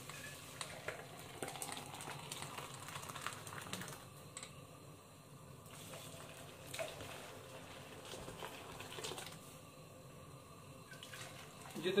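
Kashmiri tea brew being poured back and forth between a saucepan and a steel jug to aerate it: a faint, uneven splashing pour with a few light knocks. The more it is aerated, the better the pink colour comes out.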